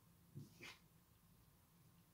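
Near silence, broken about half a second in by a soft tap and a brief brush of a tarot card being laid down on a tabletop.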